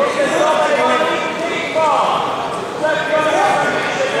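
Several voices calling out and talking over one another, echoing in a large sports hall.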